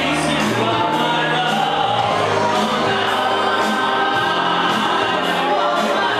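Two male vocalists singing a song into handheld microphones, amplified over an instrumental backing with a moving bass line.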